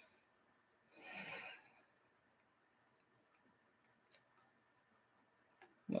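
Near silence: room tone, with a soft, short rush of noise about a second in and a single faint click a little after four seconds.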